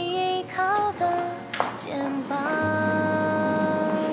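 A slow sung ballad: a voice sings a gliding melody over soft accompaniment, holding one long note through the second half.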